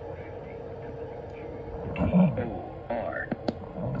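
A few sharp clicks in the second half, from a computer mouse, over a steady hum. A brief mumble comes about halfway in.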